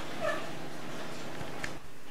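A single short, high-pitched yip, most like a dog's, about a quarter of a second in, then a sharp click near the end.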